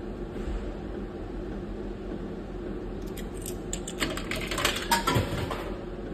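Steady hum from a bar slot machine. About three seconds in, a quick run of sharp clicks and metallic clatter lasts a couple of seconds, typical of a coin dropping through the machine's coin slot and being credited.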